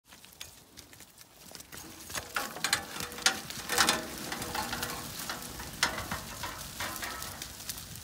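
A flock of Zwartbles sheep hurrying over litter-covered ground to their troughs: a busy crackle and rustle of hooves with scattered sharp knocks, building after the first couple of seconds.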